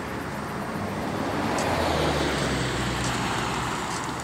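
A passing car: its engine and tyre noise swell to a peak about halfway through and then ease off.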